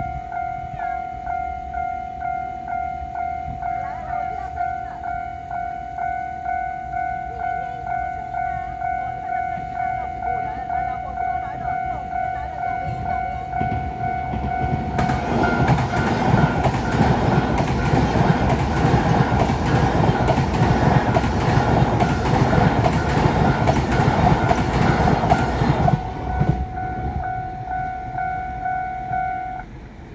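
Railway level-crossing warning bell ringing in a steady, repeating electronic ding. About halfway through, an electric passenger train passes over the crossing for roughly ten seconds, its wheels clattering over the rails and louder than the bell. After the train has gone the bell rings on alone and stops near the end.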